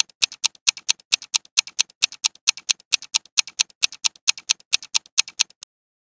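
Countdown timer ticking sound effect: sharp, even ticks at about four a second, counting down the answer time. The ticks stop abruptly shortly before the end.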